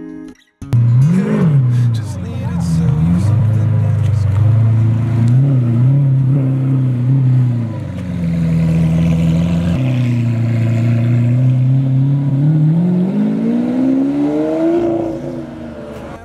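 Lamborghini Aventador V12 engine: a quick rev blip about a second in, then a low, uneven note at crawling speed as the car pulls away, rising steadily in pitch near the end as it accelerates.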